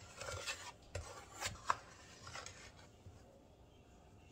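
A metal measuring cup scooping and scraping through flour in a container, with a few light clicks against the rim, busiest in the first two seconds and quieter after.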